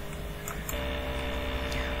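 Steady low electrical hum with faint hiss, no speech. A fuller set of humming tones comes in about three quarters of a second in.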